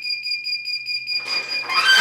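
Heat press timer alarm beeping, a high electronic tone pulsing about four times a second, signalling that the pressing time is up. It stops just before the end, as the press's upper platen is lifted open with a rising rush of noise.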